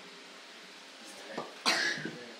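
A person coughs twice near the end, a short cough followed by a louder one.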